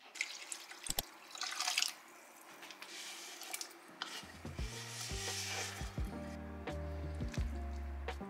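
Cut potatoes sliding off a wooden cutting board into a pot of broth, with knocks and splashes of liquid. Background music comes in about halfway through.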